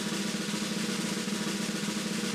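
Snare drum roll, steady and unbroken, building suspense before a winner is announced.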